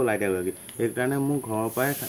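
A man talking to an interviewer, over a steady high-pitched insect drone typical of crickets. Near the end the drone stops and a hiss takes its place.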